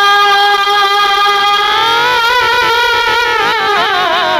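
A man singing Urdu verse into a microphone. He holds one long steady note, then about halfway through the pitch rises and breaks into a quick wavering ornament.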